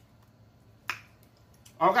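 A single sharp click about a second in: a metal fork striking the plate as rice is scooped up.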